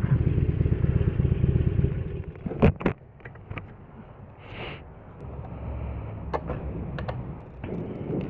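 Harley-Davidson Forty Eight's 1200 cc V-twin idling, then switched off about two and a half seconds in, with a sharp knock. Only faint clicks and a brief hiss follow.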